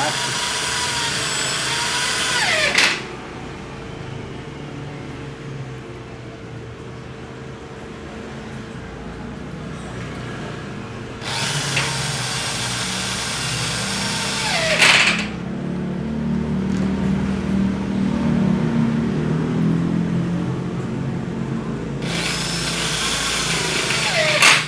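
Corded electric drill driving screws into an aluminium sliding-door frame to fix a roller bracket, in three runs of a few seconds each, the motor's whine falling away as each run stops. Between the runs, quieter handling sounds and a faint steady hum.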